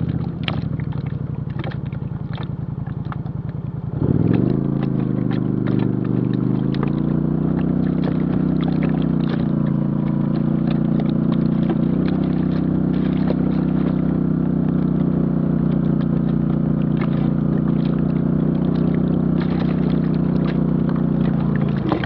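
Off-road vehicle engine running along a rough dirt trail, with scattered clicks and rattles over the engine. About four seconds in, the engine revs up and then holds steady at higher revs.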